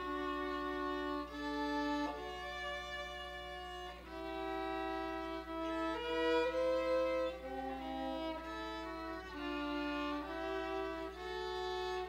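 Violins playing a slow melody in two-part harmony, with long held notes that change every second or two.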